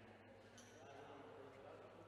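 Near silence: faint, indistinct voices of people talking in a large room over a steady low hum.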